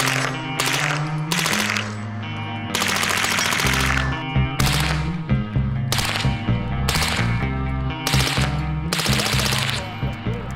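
Suppressed automatic firearms fired in about ten short bursts of rapid shots, with one longer burst about three seconds in, over background music with a steady bass line.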